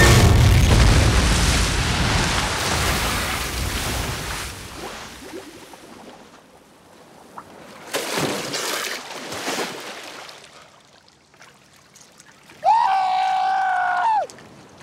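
An explosion in the water: a loud boom with a deep rumble and falling spray that fades away over about five seconds. A splash follows about eight seconds in.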